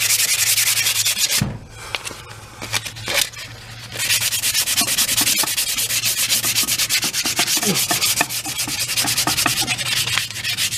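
Sandpaper rubbed by hand quickly back and forth along a ball peen hammer's wooden handle, stripping off its varnish. The strokes stop about one and a half seconds in, with a couple of light knocks in the pause, and start again about four seconds in.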